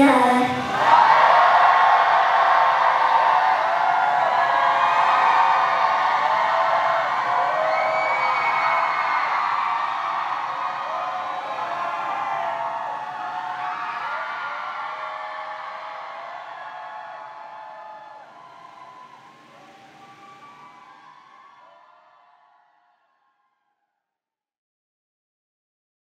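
Just after the song's final note, a crowd of fans cheers and screams, many high voices together. It fades steadily and is gone a little before the end.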